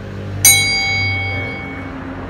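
A single bright bell-like ding, struck once about half a second in and ringing out for about a second and a half.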